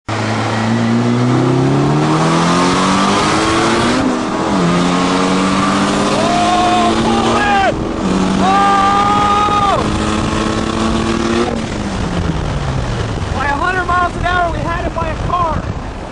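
A car engine heard from inside the cabin, accelerating hard through the gears in a street race: it climbs in pitch three times with two gear changes, then eases off and slows from about 11 seconds. Near the end, people in the car are shouting and laughing.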